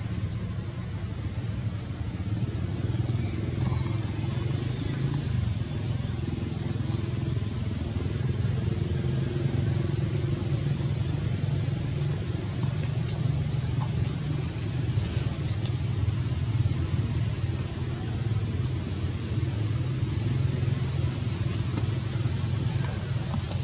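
A steady low engine rumble, running evenly throughout.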